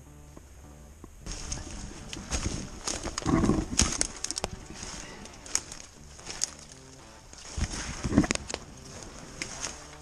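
Footsteps crunching through thin snow and dry leaves, with twigs snapping and brush scraping against clothing as someone pushes through thick saplings. It starts about a second in, with a louder rush of brush noise around the middle and again near the end.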